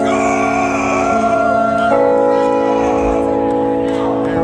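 Live rock band playing long held chords through a hall PA, recorded from the audience, with the chord changing about two seconds in.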